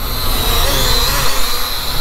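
F7 Drone Pro 2 toy quadcopter flying close by, its propellers and motors buzzing with a whine that wavers in pitch as it manoeuvres.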